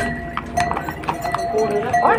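Hooves of horses and mules clip-clopping unevenly on a stone trail.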